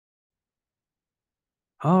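Dead silence for nearly two seconds, then a man's voice starts speaking just before the end.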